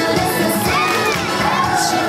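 Upbeat dance music playing, with a group of voices shouting and cheering over it about a second in.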